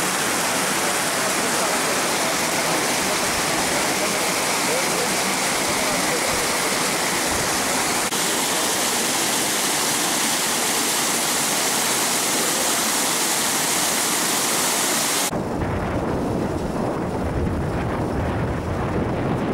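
Water from a brimming irrigation tank rushing against and over its embankment, a loud steady hiss. About fifteen seconds in it cuts abruptly to a low rumble.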